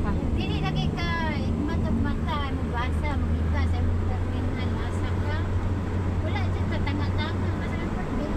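Steady low road and engine rumble inside a moving car's cabin. A high voice talks or babbles over it in the first few seconds and again near the end.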